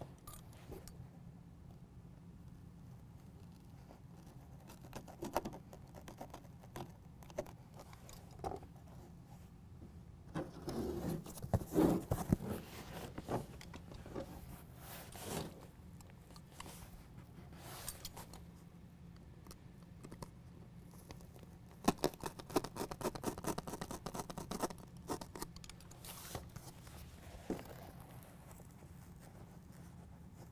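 Foam-backed carpet bed liner being handled and cut with a utility knife to clear a tie-down cleat: scattered rustles and scrapes of the carpet material. The sounds come in two busy spells, about ten seconds in and again a little past twenty seconds, over a faint low hum.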